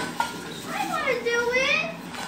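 Two light metallic clinks from the stirring crank of a cart-style popcorn machine being turned, followed by a child's drawn-out wordless voice.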